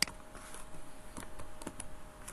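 Computer keyboard and mouse clicks: one sharp click at the start, then a few lighter clicks close together near the end, over a faint steady hum.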